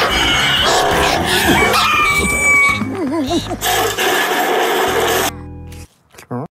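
Several cartoon soundtracks playing over one another at once: music, cartoon character voices and sound effects in a dense, cluttered mix. Most of it cuts off suddenly about five seconds in, leaving a fainter sound that stops just before the end.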